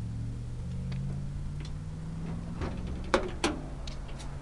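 Two sharp metallic clicks about three seconds in, a third of a second apart, from the truck's door latch as the door is opened, after a few lighter ticks. A low hum that slowly rises in pitch runs underneath.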